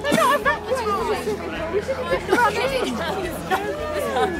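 Several people chattering at once, their voices overlapping, with no clear words standing out.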